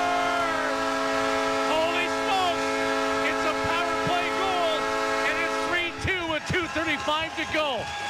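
Hockey arena goal horn sounding one long steady blast, signalling a goal just scored, and cutting off about six seconds in. Excited voices can be heard over the horn and after it.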